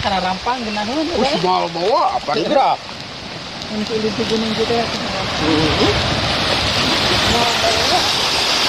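A small stream with low water running, a steady rush of water that grows louder over the last five seconds. People's voices talk over it in the first three seconds.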